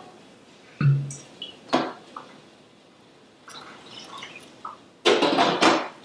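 A wine bottle being opened with a couple of sharp clicks, then about five seconds in a loud rush of white wine poured into a pan of boiling clam broth.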